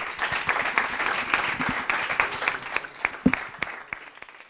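Audience applauding, a dense patter of hand claps that thins out in the last second.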